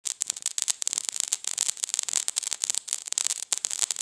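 Dense, irregular crackling made of many rapid sharp clicks, with most of the energy high up.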